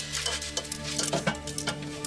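Stainless-steel plates and utensils clinking and clattering again and again as they are handled and washed, with a soft sustained music tone underneath.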